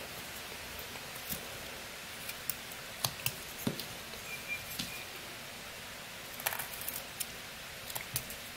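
Pocket knife blade slicing small shavings from a piece of Eastern white pine: irregular short cuts and clicks over a faint steady hiss.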